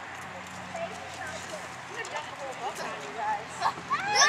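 Faint, indistinct voices of people in the room, with short vocal sounds coming more often toward the end, over a low steady hum.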